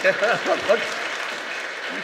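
Audience applauding steadily, with a few voices heard over the clapping in the first second.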